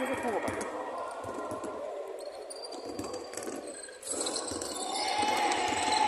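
A basketball bouncing on a wooden court during play, a few irregular thuds, with players' voices in the background.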